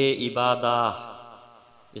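A man's voice reciting in a drawn-out, chant-like manner, ending about a second in and followed by a short quiet pause.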